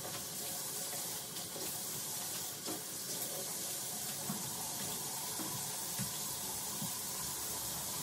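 Bathroom sink faucet running steadily, with occasional light knocks and wiping of a sponge on the countertop around it.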